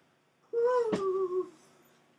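A voice humming one held, high note for about a second, sliding slightly down in pitch, with a short click partway through.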